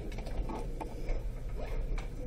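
Soft, irregular light ticks and rustles of hands moving onto a sheet of paper with a plastic pen, over a steady low hum.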